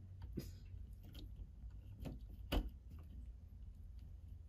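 A few sparse light clicks and taps of a screwdriver and fingers on the terminal screws and wires of an old Honeywell T87 thermostat base plate as the screws are loosened. The loudest click comes a little past halfway, over a low steady hum.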